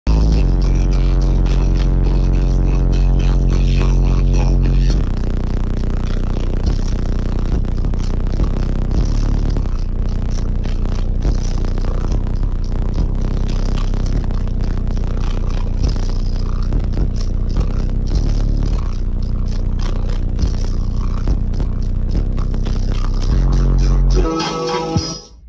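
Bass-heavy music played at very high volume through a 100,000-watt car audio system's subwoofers, heard from inside the vehicle's cabin. A long, deep bass note holds for about the first five seconds, then the track moves into a busier beat.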